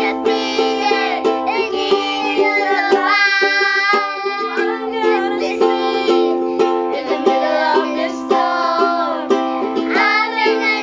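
Ukulele strummed steadily as accompaniment while a woman and two young children sing a worship song together in a small room.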